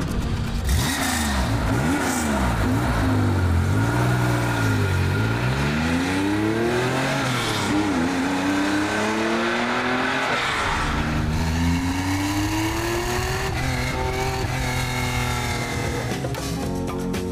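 1973 Porsche 911 Carrera RS 2.7's air-cooled 2.7-litre flat-six firing up and being revved a few times. It then pulls away, the revs climbing in long sweeps with a drop between each, as through gear changes.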